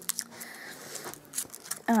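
Paper and cardboard handled: soft crinkling and a few light clicks and taps as an advent calendar door is opened and its contents taken out.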